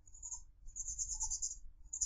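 Felt-tip marker scratching on paper in three strokes, drawing a small circle and tracing over a line: a short stroke, a longer one of about a second, then a short one near the end.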